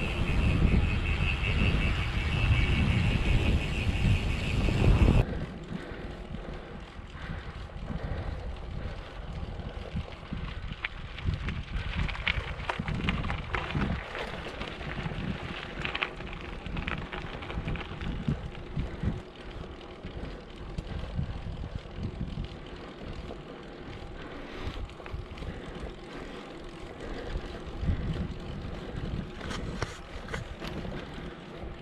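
Wind buffeting the microphone of an action camera on a moving bicycle, with rolling tyre noise. About five seconds in, the sound changes suddenly to quieter rolling noise with scattered clicks and rattles from the bike.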